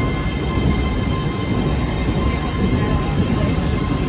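ScotRail Class 380 electric multiple unit pulling slowly into the platform: a steady low rumble of its wheels and running gear on the rails, with a faint steady high whine above it.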